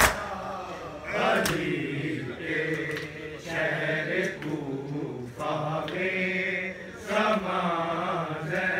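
Men chanting a noha, a mourning lament, in long drawn-out phrases, with sharp slaps of hands on bare chests (matam) right at the start and again about a second and a half in.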